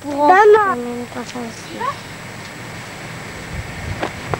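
A high-pitched voice calls out for about the first second, followed by a few short vocal sounds. After that only a low, steady hiss remains, with a few faint knocks near the end.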